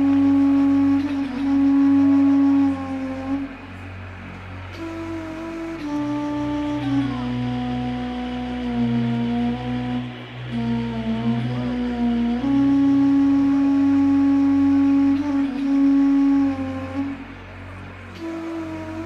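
Instrumental rock-band intro: a keyboard synthesizer plays a slow melody of long held, flute-like notes that slide from one pitch to the next, over low held bass notes.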